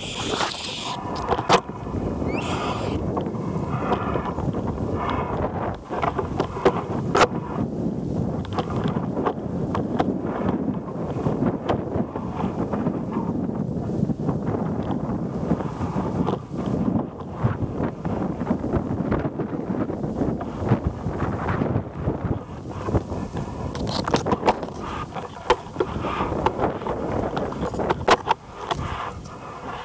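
Wind rumbling on a handheld camera's microphone, with scattered clicks and knocks as leaves and branches brush against the camera.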